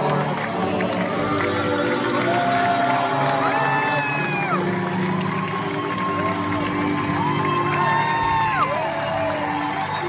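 Grand piano playing the closing vamp of a hoedown tune while the audience cheers and applauds, with long whoops about three seconds in and again about seven seconds in.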